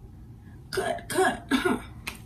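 A young woman coughing three times in quick succession.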